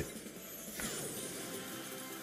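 Sweet Bonanza online slot's game audio, faint: background music with a glittery effect as a multiplier bomb bursts on the reels, and a gliding sweep about a second in as the win screen comes up.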